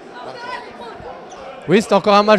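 Faint background chatter of people in a large hall, then a man starts speaking close to the microphone near the end.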